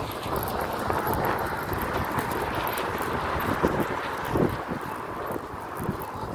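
Steady rushing noise with frequent small clicks and rustles from a phone's microphone carried on a brisk walk.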